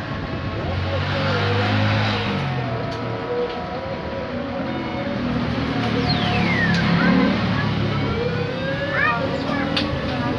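A motor vehicle engine running, with people's voices in the background.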